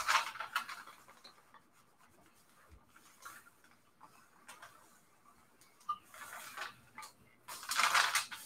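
A clothes iron sliding over a damp sheet of coffee-dyed paper in soft rubbing strokes, with the paper rustled as it is shifted near the end.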